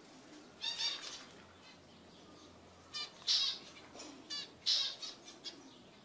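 Zebra finches giving short, nasal, buzzy calls in a few brief clusters: about a second in, around three seconds, and again near four and a half seconds.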